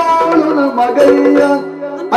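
Yakshagana stage music: drum strokes over a steady held drone, with a sung line that bends in pitch. The music drops in level near the end.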